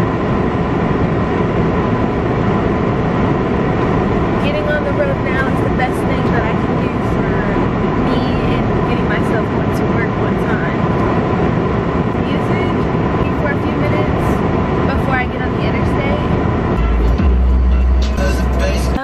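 Car being driven, with steady road and engine noise in the cabin and a voice over it that is not spoken words, most likely a song playing.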